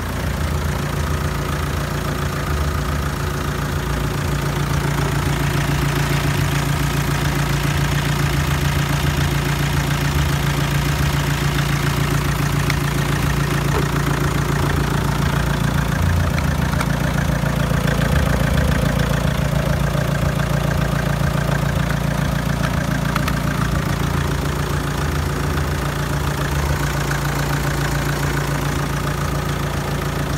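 Renault 1.9 dCi (F9Q732) four-cylinder turbodiesel idling steadily, heard close up in the open engine bay.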